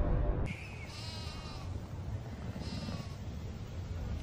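Music cuts off about half a second in, then two animal calls sound over a low steady background noise, the first about a second long and the second shorter.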